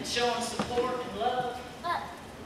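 A woman talking into a handheld microphone.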